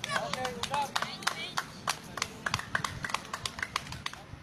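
Young voices calling out on a ball field, over a fast, irregular run of sharp clicks or claps, several a second, that goes on throughout.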